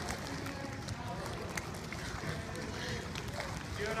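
Faint background chatter of children and adults around a swimming pool, over a steady low noise haze, with a few small clicks or splashes.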